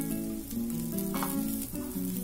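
A dosa frying on a hot pan, the ghee sizzling as it is drizzled over it. Background music with changing notes plays over it.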